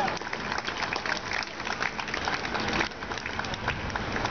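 Applause from a small, sparse tennis crowd after a point ends, dense for about three seconds and then thinning out.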